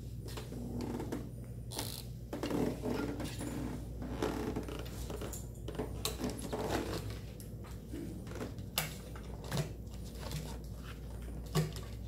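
Handling noises: scattered clicks and taps of small objects and a phone on a wooden desk, over a steady low hum.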